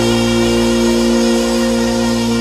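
Live rock band holding one long sustained chord: the notes ring steadily over a held bass note, with no new strikes.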